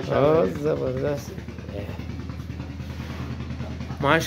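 A small engine idling steadily, heard as an even low hum with a fast pulse. It comes out on its own once a voice stops after the first second or so.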